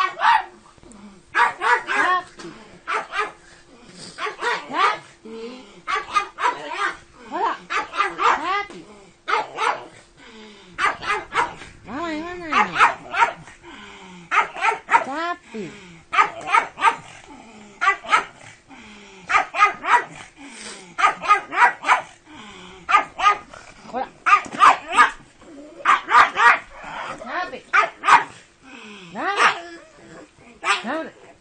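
Pug barking over and over, in quick runs of two to four sharp barks.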